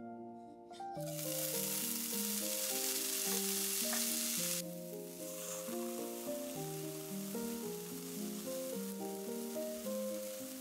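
Diced bacon sizzling in a hot frying pan: the sizzle starts suddenly about a second in as the bacon goes in, is loudest for the next few seconds, then settles to a quieter steady sizzle as it is stirred. Background music plays throughout.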